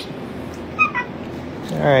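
A Shiba Inu gives two short, high whines in quick succession about a second in.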